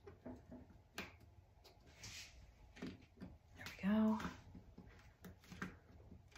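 Faint clicks and scrapes of painted laser-cut wooden pieces as a tight tab is pressed and worked into its slot, with a short spoken "There we go" about four seconds in as it seats.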